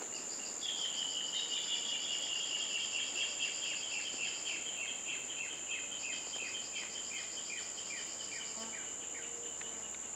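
Insects droning steadily on one high note, with a run of short, falling chirps, about three a second, that begins about half a second in and fades away over the next seven seconds.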